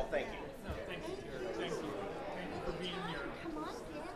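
Chatter of many people talking at once in small groups, several voices overlapping, in a large room.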